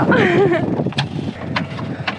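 A person's voice briefly at the start, then a sharp knock about a second in and a fainter one a little after.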